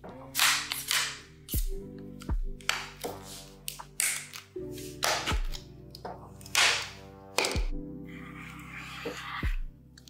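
Background hip-hop beat with deep bass kicks that drop in pitch, and over it a run of sharp clicks and snaps at uneven times as the snap-on lid of a plastic pail is pried loose around its rim and lifted off.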